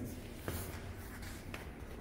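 Faint rustling and rubbing from a hand handling the bike and the camera being moved, with a light tap about half a second in.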